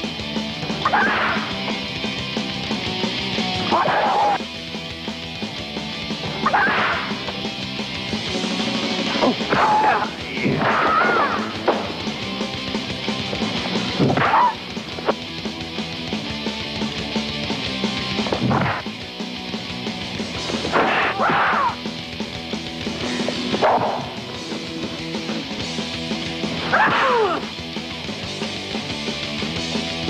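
Background music overlaid with martial-arts film sound effects: sweeping whooshes and hits recurring about every two to three seconds.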